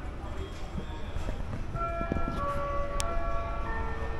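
Low steady hum of an airport terminal with indistinct background voices. From about two seconds in, a few sustained musical notes come in and overlap, with a single sharp click near the end.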